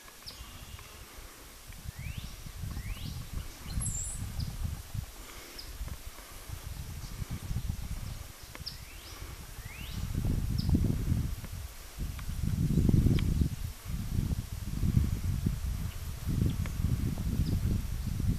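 A swarm of honey bees buzzing around a hummingbird feeder, with a low, uneven rumble that grows louder from about ten seconds in. A few short rising bird chirps sound above it.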